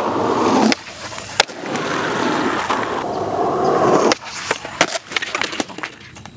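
Skateboard wheels rolling over asphalt, with a sharp clack about a second and a half in. The rolling stops suddenly about four seconds in and gives way to a run of clacks and knocks as the board and skater hit the pavement in a fall.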